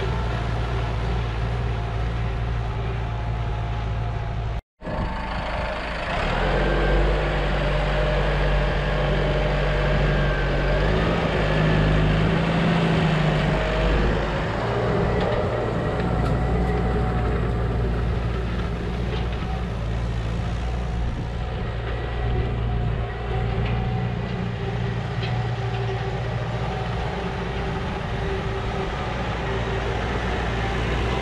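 McCormick MC130 tractor's diesel engine running steadily under load while pulling a disc harrow through dry soil. Its pitch shifts slightly now and then, and the sound cuts out completely for a moment about five seconds in.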